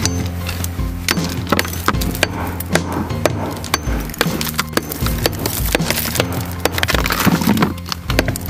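A digging tool repeatedly and irregularly striking and scraping packed stones and rubble, several hits a second. Background music with a steady low bass plays underneath.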